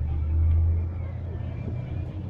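Low engine rumble from a Cadillac convertible, swelling about half a second in and then settling back to a steady run.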